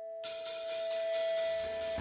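Electric guitar holding one sustained, ringing note while a cymbal swell builds underneath, growing steadily louder as the intro of a rock song builds up. Right at the end the full band crashes in.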